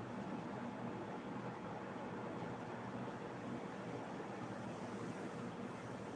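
Faint, steady hiss of room noise, with no distinct strokes or changes.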